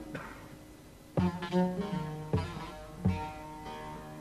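Bağlama (long-necked Turkish folk lute) playing an instrumental passage between sung lines of a türkü. It is near quiet for about the first second, then plucked notes and short phrases come in a few times, each ringing on.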